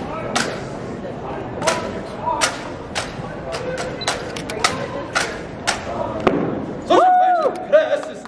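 Drill rifles being slapped, caught and struck by hand in an exhibition drill routine, a series of sharp claps and knocks at uneven spacing. About seven seconds in, a single rising-and-falling voice call sounds over them.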